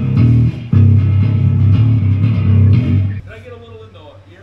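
Electric bass guitar played solo through the PA for a soundcheck, a few held low notes with a brief gap about half a second in, stopping about three seconds in.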